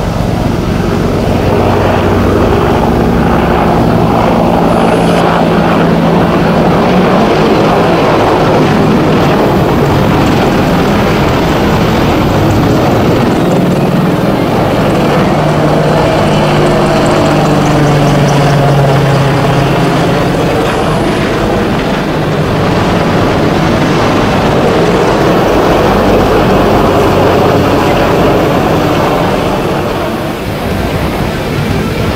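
AH-64 Apache attack helicopter flying past, its rotors and twin turbine engines loud and steady throughout, with engine tones that shift in pitch as it moves.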